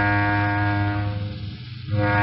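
Slow music on low bowed strings holding one long note, which fades away about a second and a half in.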